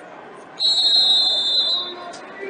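A referee's whistle blown in one long, steady blast of a little over a second, starting about half a second in, over background voices in a busy gym.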